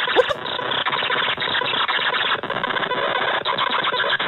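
Harsh, dense electronic noise with a squealing edge, flickering constantly, played by a computer running screen-glitching malware.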